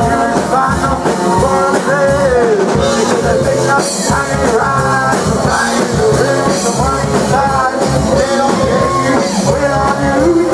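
Indie rock band playing a song live on electric guitars with a drum beat, loud and continuous.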